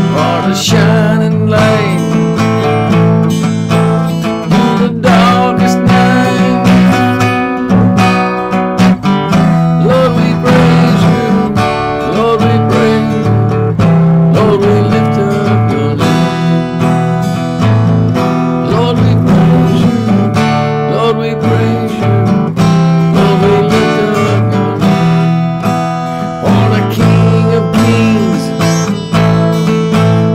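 Acoustic guitar strummed steadily, playing a run of chords with an even strumming rhythm.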